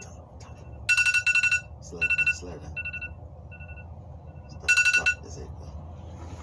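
Electronic beeping at one steady pitch in short bursts: a quick run of beeps about a second in, a few single beeps after, and another quick run near five seconds.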